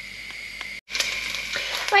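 Minced beef sizzling in oil in a cast-iron casserole pot. After a brief break about a second in, the sizzle is louder, the mince now browned.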